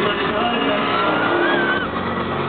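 Live concert music with a high voice sliding up and down in pitch over it from about the middle to near the end.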